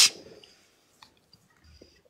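A voice trailing off, then near silence with a few faint small clicks, like mouth or handling noises over a phone microphone.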